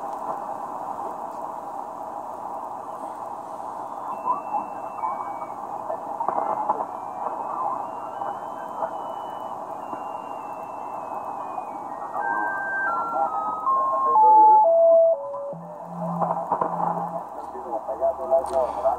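Shortwave receiver audio in lower sideband on the 40 m band: steady band hiss and static, with a thin heterodyne whistle from a station's carrier that falls in even steps as the receiver is tuned down in 100 Hz steps. Near the end a louder low steady tone comes in briefly.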